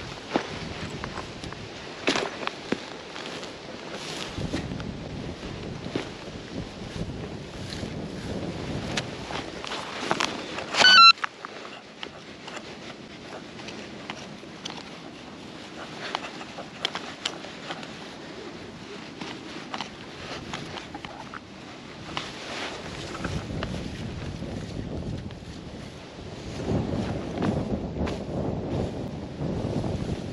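Digging into grass turf and soil: scattered scrapes and knocks of the digging tool, with clothing rustle and wind on the microphone. About eleven seconds in there is a brief loud burst of electronic beeping.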